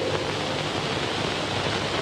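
Steady hiss of an old archival speech recording during a pause between the speaker's sentences.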